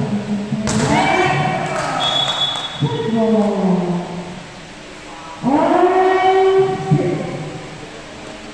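Volleyball players shouting and yelling during play in a large indoor hall, in three bursts of long drawn-out calls, the last the loudest. A sharp hit, likely the ball being struck, comes just under a second in.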